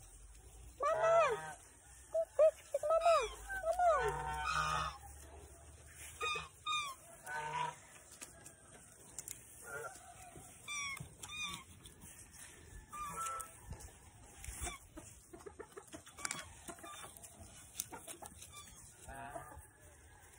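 Geese honking: a run of rising-and-falling calls in the first few seconds, then scattered shorter honks.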